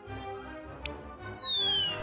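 A cartoon falling-whistle sound effect: one clear whistle tone starting about a second in and sliding steadily down in pitch, the usual signal of something falling. Soft background music plays underneath.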